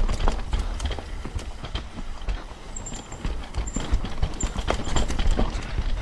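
Mountain bike riding down a dirt singletrack, picked up by a camera on the bike or rider. The bike rattles and knocks in many quick, irregular clicks as it runs over roots and rocks, over a low rumble of tyres and air.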